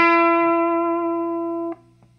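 Electric guitar in open G tuning with the echo off: a single note hammered on at the ninth fret of the third string, rising sharply from the open string and ringing steadily. It is cut off abruptly a little under two seconds in.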